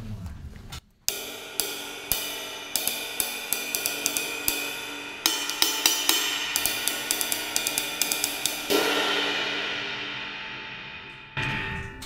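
A 20-inch hand-made Labyrinth ride cymbal (about 1910 grams) played with a wooden drumstick. About a second in, a run of ride strokes starts, with a few louder accents, and lasts some seven seconds. The cymbal is then left to ring and fade away.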